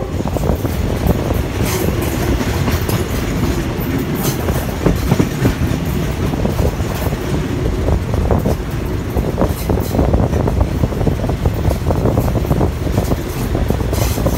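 THN/NKF diesel railcar set running along the track, heard from an open window: a steady rumble of the train and the rushing air, with scattered clicks and knocks from the wheels on the rails.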